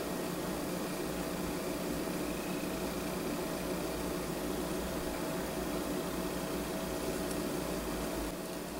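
Steady hiss and low electrical hum of room background noise, unchanging throughout.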